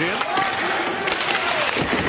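Ice hockey game sound: skates scraping on the ice and sticks clacking on the puck over a steady arena noise, with a few sharp stick strikes.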